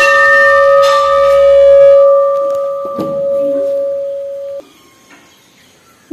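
Hanging temple bell (ghanti) struck and ringing with a steady, clear tone, struck again about a second in. The ring fades slowly and then cuts off suddenly about four and a half seconds in.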